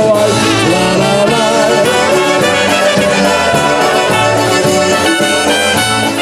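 Live polka band playing an instrumental break, with the trumpet playing the melody over saxophone, accordion and drums.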